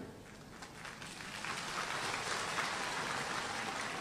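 Audience applause, swelling gradually from about a second in and then continuing steadily.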